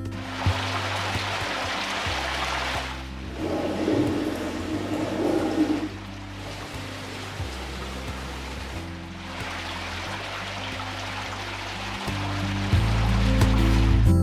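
Running, splashing water that comes and goes in stretches of a few seconds, over soft, slow background music.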